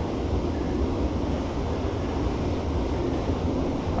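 Steady, low rushing of water flowing through a concrete spillway.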